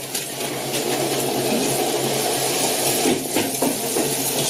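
Steady sizzling and crackling from food cooking in a pot on a clay stove, with a faint low hum underneath.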